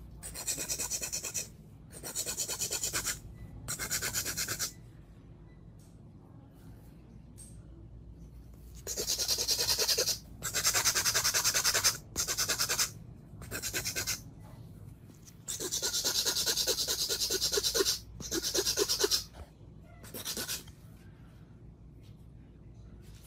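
A white nail buffing block rubbed rapidly back and forth across artificial nails, in about ten short bursts of quick scratchy strokes, each one to two seconds long, with a pause of a few seconds in the first half.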